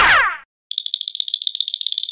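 Cartoon sound effects added in editing. A brief falling-pitch glide, then after a short gap a rapid, high, bell-like rattle of about a dozen strikes a second, lasting over a second.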